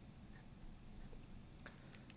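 Fountain pen scratching faintly on paper in a few short strokes.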